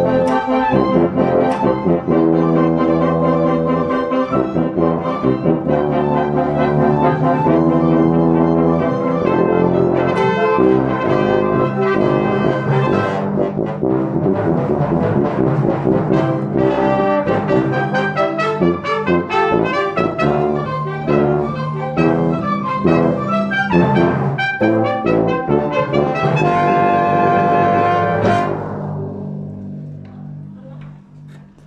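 A tuba playing a passage of held notes and quicker moving notes, ending on a sustained note that dies away in the last two seconds.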